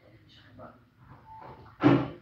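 Guitar music playing faintly, with a sudden loud sound just before the end.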